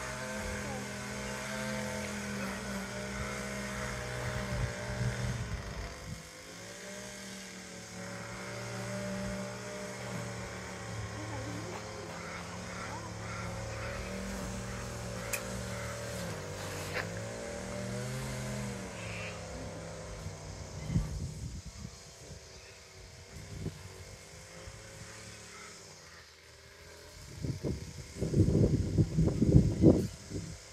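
An engine running steadily, its pitch sagging and recovering twice, then fading out about two-thirds of the way through. Near the end, a run of loud low rumbling knocks.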